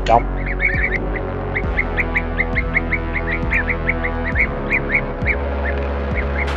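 Blue-tailed bee-eaters calling: a rapid run of short, repeated chirps, several a second. Steady background music sits underneath.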